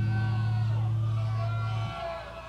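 Heavy metal band's final low note held on bass and guitar amplifiers at the end of a song, cutting off just before the end. The crowd cheers and whoops faintly behind it.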